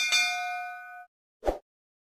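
Notification-bell sound effect: a single bright ding that rings with several clear tones for about a second and fades. About one and a half seconds in, a short soft thud follows.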